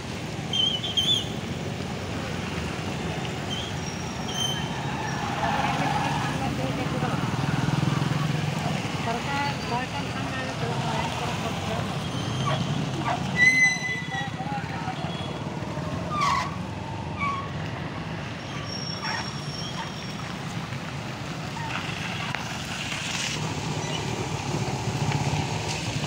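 Street traffic: motorcycle and auto-rickshaw engines running past, with voices mixed in and a brief high beep about halfway through.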